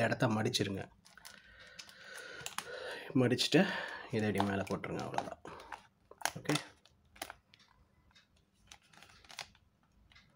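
Plastic fish bag crinkling as a rubber band is wound tight around its twisted neck, with a few sharp clicks and snaps of the band about six to seven seconds in.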